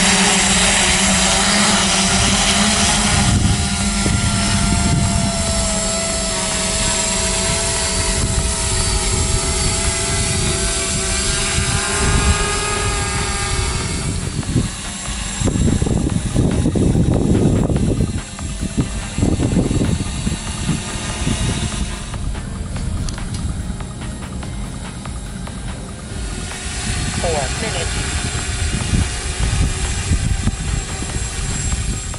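AD1 quadcopter's four electric motors and propellers running as it lifts off and flies, a hum of several tones that drift slightly in pitch. About halfway the tones fade under louder, uneven low rumbling.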